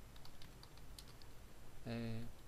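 Computer keyboard being typed on: a quick run of about six faint key clicks as a short word is entered.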